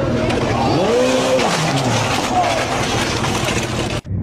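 Sport motorcycle engine revving, its pitch rising and then falling away over about a second and a half, over the noise of a crowd of spectators.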